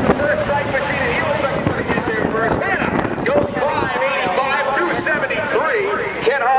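People talking, over the low rumble of a jet dragster fading into the distance; the rumble dies away about four seconds in.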